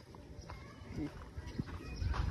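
Quiet outdoor ambience with a low rumble and brief, faint snatches of distant voices.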